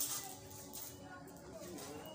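Faint voices with music in the background, quieter than the close conversation around it.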